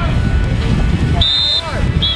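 A coach's whistle gives one short, steady blast about a second in, over a low rumble. Shouting follows just after.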